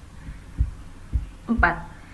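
A few short, soft, deep thumps about half a second apart, with a woman saying one short word near the end.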